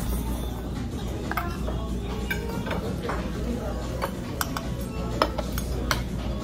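Metal spoon and metal chopsticks clinking against a metal bowl and dish several times, some clinks ringing briefly, over restaurant background chatter and music.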